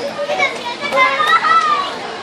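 Young children's high-pitched voices chattering and calling out, with general crowd murmur underneath.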